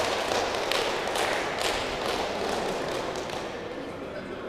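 Footsteps on the hall floor, a run of sharp taps about two a second that grows fainter, echoing in a large sports hall over a low hubbub.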